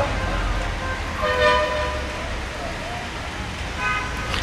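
A short, steady horn-like toot about a second and a half in, and another brief one near the end, over a steady low hum from the open-air sound system.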